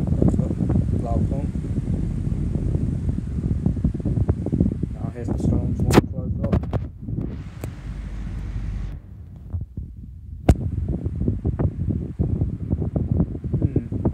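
Two 16-inch plastic oscillating pedestal fans running, their airflow buffeting the microphone held close to the grille as a loud, uneven rumble, easing for a moment about two-thirds of the way through. A couple of sharp clicks break in, around the middle and a few seconds later.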